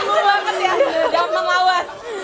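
Several young women talking over one another into handheld microphones: unclear overlapping chatter.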